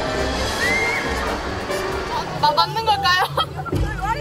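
Background music, then, from about halfway, young women shrieking in high, wavering voices as they ride a rapids raft.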